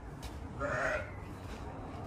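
A single short bleat from livestock, lasting under half a second, a little over half a second in, over a steady low background rumble.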